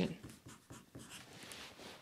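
Marker pen writing on a chart: a run of short, faint scratchy strokes.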